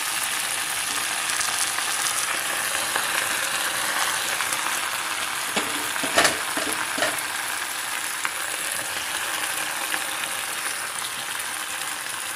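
Fresh gongura (roselle) leaves sizzling steadily in a tablespoon of hot oil in a stainless steel pan as they begin to wilt. A few light knocks come around six seconds in.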